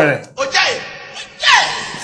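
A man's voice: speech trails off, then two short breathy vocal sounds come about a second apart, before speech picks up again.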